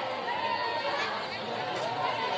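Crowd of spectators chattering, many voices talking at once in a steady murmur.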